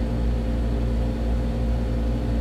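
Steady mechanical hum of a window air conditioner running, with a few constant low tones over an even rumble.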